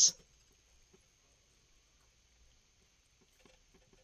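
Near silence: faint room tone with a few very faint, scattered ticks.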